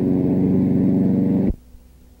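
A small engine running steadily, a low, even drone that stops abruptly about one and a half seconds in with a click, leaving only faint hiss.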